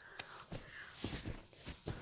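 Faint handling noise: rustling and a few light clicks and taps of hands fiddling with a small object.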